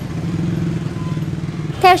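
A motorbike engine running close by with a steady, even hum. It stops near the end, when a voice starts speaking.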